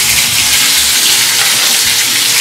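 Diced onion, peas and tomato frying in hot oil in a steel kadhai: a steady sizzle.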